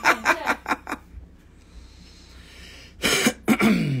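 Laughter in short rhythmic bursts, then about two seconds of quiet, then another laugh and a throat clear near the end.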